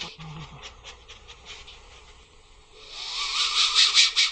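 Anteater snuffling with hissing breaths: a quieter stretch with faint ticks, then a loud hiss that swells up near the end and stops.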